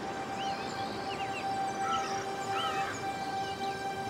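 Soft background music of held, sustained tones, with birds chirping in short bursts during the first and middle parts.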